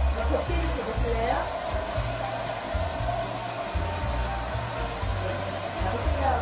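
A hair dryer running steadily, with background music and its bass line playing underneath.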